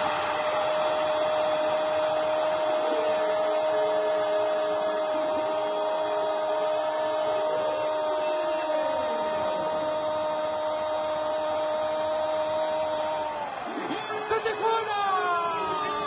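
Football commentator's goal cry: one long "gol" held on a steady pitch for about thirteen and a half seconds over a stadium crowd, breaking off near the end, followed by crowd and other voices.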